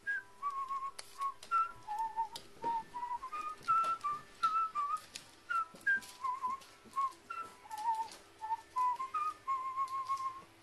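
A whistled tune of short, clear notes, about two a second, stepping up and down in pitch, with a few faint clicks underneath.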